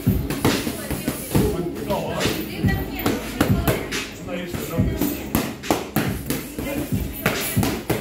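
Boxing gloves striking focus mitts in a quick, uneven string of sharp smacks, several a second, over background music.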